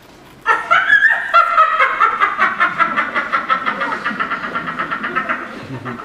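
Laughter breaking out suddenly about half a second in: a high voice laughing in quick, even ha-ha pulses, about five a second, that fade toward the end.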